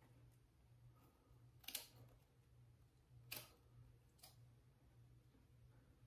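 Scissors snipping through wig lace: two faint snips about a second and a half apart, then a softer one, against near silence.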